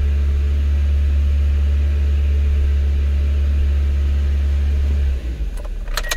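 The 2003 Toyota Corolla's 1.8-litre four-cylinder engine idling, a steady low hum that drops in level and turns uneven about five seconds in.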